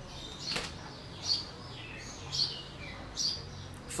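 A bird chirping: four short, high chirps, about one a second.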